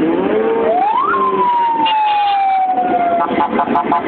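Police car's electronic siren: one quick rising sweep, then a long falling wail, then a rapid pulsed pattern of about four pulses a second starting about three seconds in.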